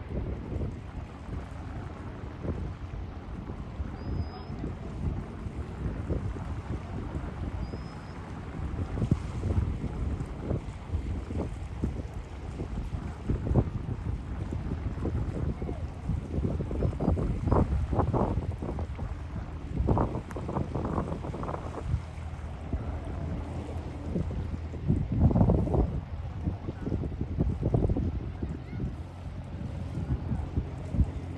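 Wind buffeting the microphone in uneven gusts, a low rumble that swells hardest in the second half.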